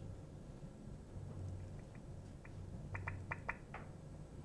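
A run of about nine short, high blips, spaced a fraction of a second apart and growing louder from about halfway in: a laptop's volume-change feedback sound as the volume is stepped up key by key. A low steady hum lies beneath.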